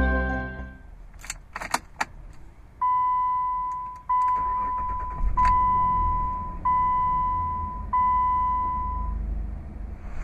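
A few clicks, then the Jeep Liberty's dashboard warning chime sounding five times, about a second and a quarter apart. Under the later chimes the 3.7-litre V6 engine idles low.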